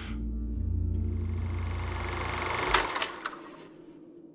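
A short musical transition: a steady low drone under a swelling hiss, with a few sharp hits near the end, fading out at about three and a half seconds.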